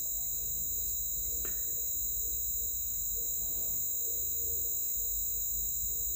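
A steady high-pitched whine, even and unbroken, with a faint low hum beneath it.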